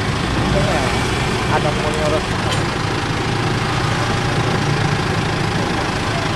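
A vehicle engine idling: a steady, even low hum. Faint voices come through briefly in the first couple of seconds.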